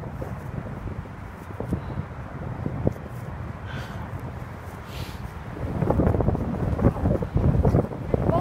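Wind buffeting the microphone, a low rumble with crackles that gusts louder about halfway through.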